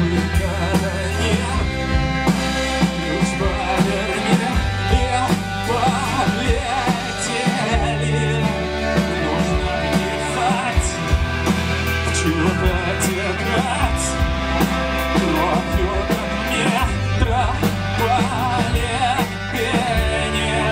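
Live rock band playing: electric bass holding sustained low notes under a drum kit beat, with guitar and keyboards.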